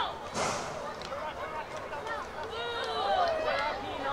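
Distant shouting from players and onlookers calling out across an open rugby league field, with no clear words. The loudest calls come in the second half.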